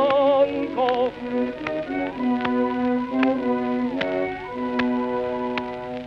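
Early acoustic-era 78 rpm recording of a male opera singer with instrumental accompaniment. A sung phrase with wide vibrato ends within the first second, then the accompaniment plays held chords that change pitch every second or so. Sharp clicks of record surface noise run throughout, and the sound is dull with no high treble.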